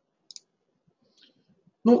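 Computer mouse double-clicked: two quick, faint clicks close together about a third of a second in.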